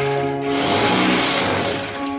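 Corded electric rotary hammer with a chisel bit hammering rapidly into a brick wall, a dense rattling noise, under background music.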